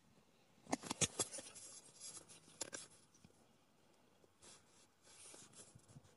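Faint handling of a powder compact: a few sharp clicks about a second in, then soft rubbing strokes as translucent powder is pressed onto the face with a sponge.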